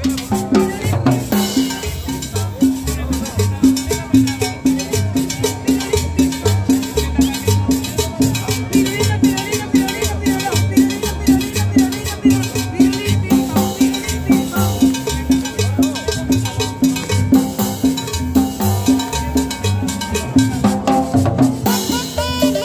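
Live cumbia from a small acoustic street band: an upright bass plucking a steady, pulsing line, a metal scraper (güira) scraped with a stick in quick, even strokes, and a strummed guitar, keeping a steady dance beat.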